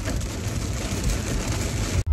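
Rain pattering on a car's roof and windows, heard from inside the cabin as a steady dense hiss of drops, with the car's low rumble underneath.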